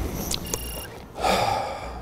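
Sound effects for an on-screen title graphic: a short high electronic beep about half a second in, then a breathy whoosh lasting under a second.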